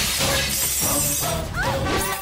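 Glass shattering and showering down as a body crashes through a glass showcase of glass bangles, the spray of breaking glass strongest about half a second to a second in, over action-film background music.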